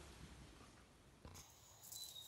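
Near silence: faint background hiss, with one short click about halfway through where the sound of the room changes.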